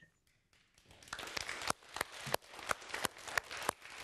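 A small studio audience of children applauding, starting about a second in, with the individual hand claps distinct.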